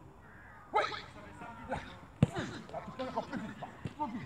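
A football kicked with one sharp thud about two seconds in, in a goalkeeper shot-stopping drill. High children's voices call out around it.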